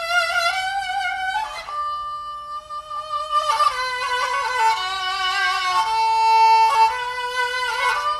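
A bowed string instrument playing a slow melody of held notes, sliding between pitches about a second and a half in and again about three and a half seconds in.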